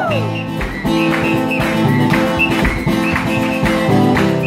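Acoustic guitar strummed in a steady rhythm, playing chords. A woman's sung note slides down and ends right at the start.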